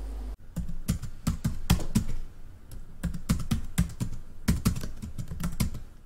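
Typing on a computer keyboard: quick, irregular key clicks several times a second, easing off briefly a little past two seconds in before picking up again.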